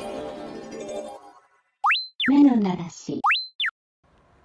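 Background music fading out, followed by comic sound effects: two quick whistle sweeps that rise and then fall, with a short, voice-like cartoon sound between them.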